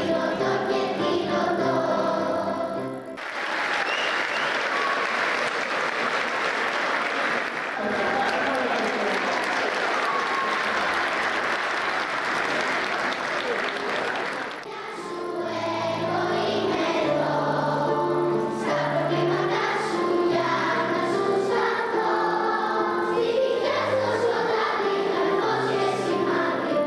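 Children's choir singing. About three seconds in, the song ends and the audience applauds for about eleven seconds. Then the choir begins singing again over steady low bass notes.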